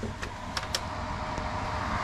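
Mercedes-Benz Actros truck's diesel engine idling, a steady low rumble heard inside the cab, with a faint steady hum and a couple of light clicks.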